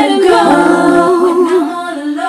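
A woman singing a cappella, holding long notes that waver slightly in pitch, with no instruments behind her.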